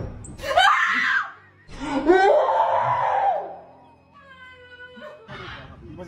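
A woman screaming in fright: two long, loud screams, the second longer.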